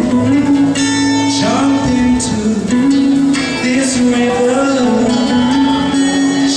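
Live worship music, with singing over guitar accompaniment and a long held note.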